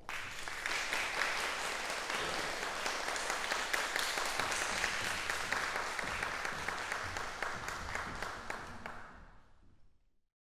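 Audience applauding in a concert hall: many hands clapping together, starting suddenly and dying away over the last second or so.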